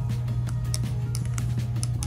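A thin plastic stirring stick clicking and scraping against a small plastic cup of foaming mixture, a few separate sharp clicks, over steady background music.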